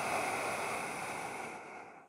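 A person's long audible breath drawn through the throat, a steady ocean-like rushing hiss typical of ujjayi breathing in vinyasa yoga. It fades near the end, and after a short pause the next breath begins.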